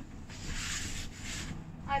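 Inside a moving gondola lift cabin: a low, steady rumble from the ride, with a soft hiss that comes in about a third of a second in and fades after about a second.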